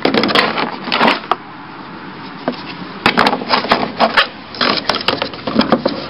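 Irregular knocks, taps and scrapes against a wooden plywood-and-timber frame, handled close by: a cluster in the first second, a quieter gap, then a denser run through the second half.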